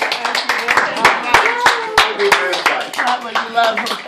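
A small group clapping, irregular and fairly loud, with several people's voices calling out over it.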